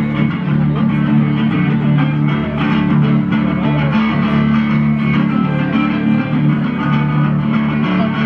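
Solo amplified sunburst archtop guitar playing an instrumental blues passage, low bass notes ringing steadily under higher picked notes.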